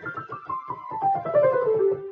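Keyboard music: a quick run of notes stepping steadily down in pitch over about two seconds, over low repeated notes.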